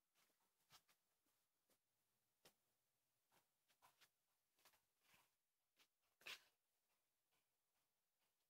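Near silence, broken by faint scattered clicks and rustles, the loudest about six seconds in: handling noise from a phone being moved about as it films.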